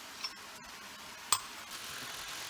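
A metal fork clinks once, sharply, against a small glass jar of minced garlic, after a faint tick, over a faint steady hiss.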